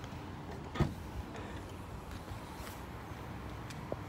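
Skoda Fabia hatchback tailgate being unlatched and opened: one sharp click-knock from the latch releasing about a second in, then a smaller tick near the end, over a steady low rumble.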